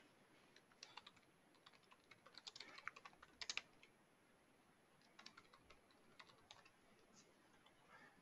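Faint typing on a computer keyboard: a quick run of keystrokes about two to three and a half seconds in, then a few scattered taps later.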